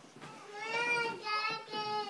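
A child's voice singing out long, held notes, starting about half a second in, with a brief break partway through.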